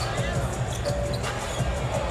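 Basketball dribbled on a hardwood court, bouncing repeatedly under arena music.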